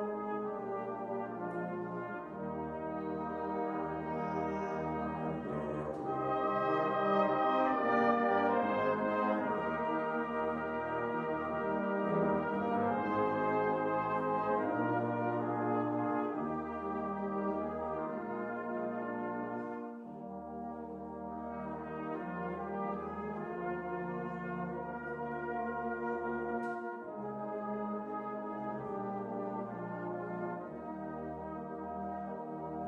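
Brass band of cornets, tenor horns, euphoniums and tubas playing a piece in held, changing chords. It swells loudest a few seconds in, drops back about two-thirds of the way through and plays on more softly.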